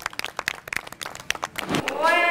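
A group of children clapping their hands together in applause, many separate quick claps at an uneven pace.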